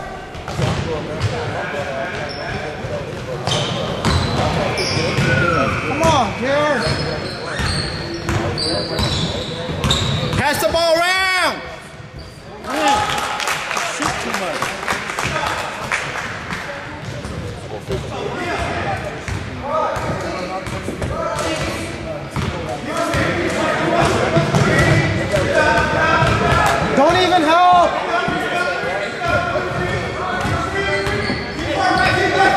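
Basketball game in a gym: the ball bouncing on the hardwood court and sneakers squeaking, under steady crowd chatter and shouting that echoes around the hall.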